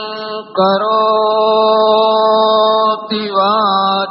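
Devotional chanting of a Sanskrit mantra, the voice holding long, steady notes with short breaks for breath about half a second in and just after three seconds, and a brief waver in pitch near the end.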